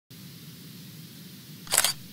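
News-channel logo sting: a faint steady low hum with light hiss, then, near the end, a short sharp burst sound effect, something like a camera shutter, as the logo appears.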